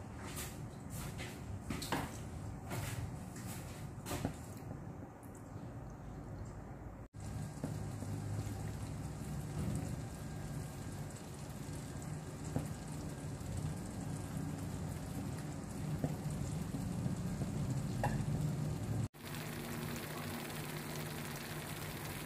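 Thick tomato and plum chutney sizzling faintly in a nonstick wok over a gas burner, almost cooked down. There is a run of small pops and spatters in the first few seconds, and the sound drops out abruptly twice, about seven seconds in and again near the end.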